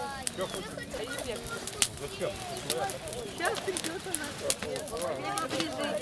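Overlapping chatter of several people talking at once, with scattered sharp clicks.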